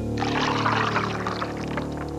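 A drink poured over ice cubes into a glass, a hissing splash that starts just after the beginning and slowly fades as the liquid settles, over low sustained background music.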